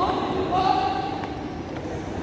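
Marching shoes striking a hard tiled floor in step, echoing in a large hall, with a drawn-out shouted voice in the first second.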